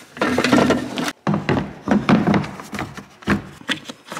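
Close handling noise: rubbing and clattering as a John Deere StarFire 6000 GPS receiver is carried down a tractor's metal steps, with scattered knocks and a couple of sharper ones near the end.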